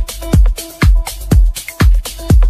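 Funky disco house music with a steady four-on-the-floor kick drum about twice a second, bright off-beat strikes between the kicks and held chord tones.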